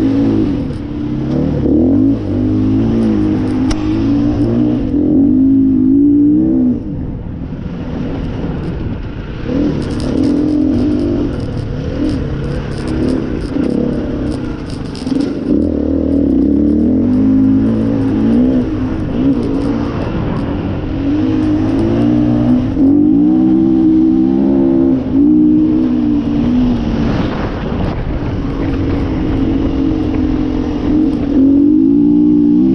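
Gas Gas 350F four-stroke enduro motorcycle engine under load on a sandy trail, revving up and down with the throttle and easing off briefly a few times.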